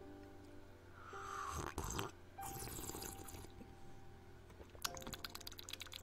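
Faint sipping and slurping of hot tea with small mouth and cup clicks, over quiet instrumental background music with held notes.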